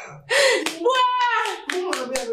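A woman wailing in grief, a high crying voice that rises and falls without words, with a few sharp slaps of hands on a body.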